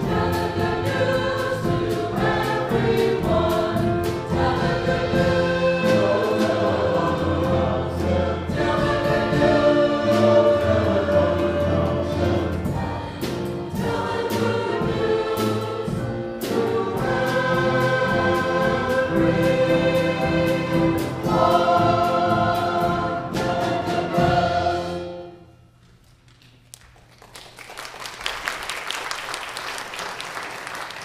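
Church choir singing with instrumental accompaniment, ending about 25 seconds in. After a short hush the congregation starts applauding near the end.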